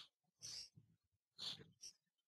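Near silence, broken by three or four faint, short breaths from a person close to the microphone.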